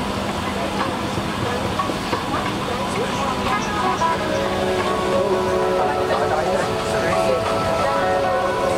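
Airliner cabin ambience: a steady low hum with passengers talking in the background, the voices growing more frequent in the second half.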